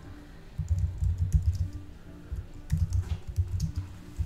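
Typing on a computer keyboard: two runs of keystrokes, one starting about half a second in and another just before three seconds, each a quick series of clicks over dull thumps.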